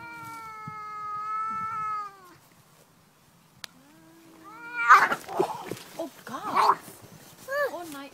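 Two domestic cats in a standoff: one long, drawn-out yowl held at a steady pitch, then a low growl. About five seconds in they break into a fight, with loud screeching caterwauls and hissing.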